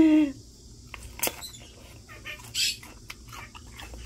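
A pet parrot gives one short squawk right at the start, followed by scattered light clicks and taps.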